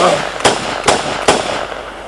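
Handgun fired four times into the air, about two sharp shots a second.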